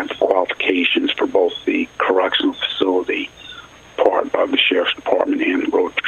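Speech only: a man talking in a recorded interview clip, his voice thin and band-limited like a telephone line.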